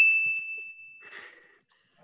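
A single bright, bell-like ding that rings on and fades away within about a second: the quiz's scoring ding, awarding a point for a correct fact.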